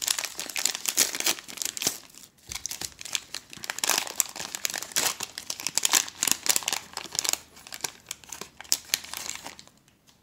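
Foil wrapper of a Panini Mosaic football hanger pack crinkling in the hands and being torn open: a dense run of crackles with a short lull a little after two seconds, dying away just before the end.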